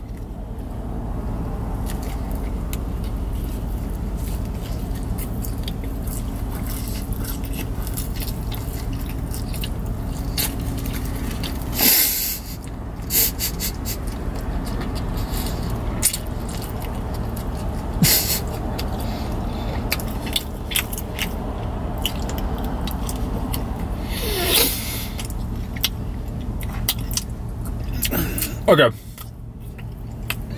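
Steady low hum inside a car cabin, the engine or ventilation running, under the sounds of someone eating. A paper burger wrapper is handled, with a few short sharp crinkles.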